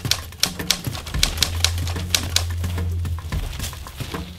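Typewriter keystroke sound effect, a rapid run of sharp clicks, over a low steady musical drone.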